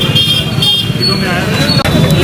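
Voices of people talking outdoors over traffic noise, with two short high-pitched toots in the first second.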